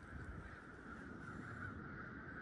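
A distant flock of birds calling continuously, many calls blending into one steady din, over a low rumble.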